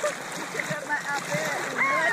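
Lake water splashing and sloshing around a floating foam water mat as a person steps on it, with short bits of voice.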